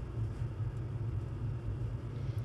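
A steady low rumble with faint hiss, a background drone with no distinct events.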